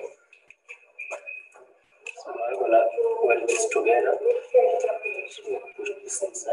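Indistinct speech, a man's voice talking without a break from about two seconds in, over a faint steady high tone.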